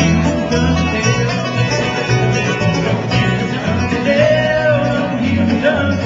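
Bluegrass band playing live: banjo, two acoustic guitars, mandolin and upright bass, the bass plucking a steady beat under the picking.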